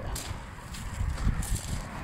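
Footsteps on gravel, a few scattered crunches over a low rumble.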